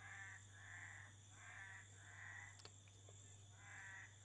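Faint series of short animal calls, one about every half second to second, heard over a steady low electrical hum.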